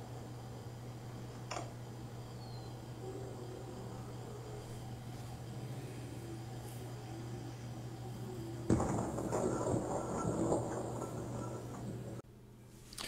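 Steady low hum of old videotape footage, then about nine seconds in a sudden blast from a collar bomb locked around a man's neck exploding, followed by about two seconds of rushing noise that fades away.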